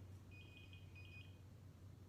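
Faint electronic beeping from hospital room equipment: a quick run of short high beeps in the first second, over a low steady hum.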